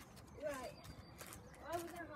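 A person's voice making two short wordless sounds that slide in pitch, about half a second in and near the end, with faint bird chirps behind.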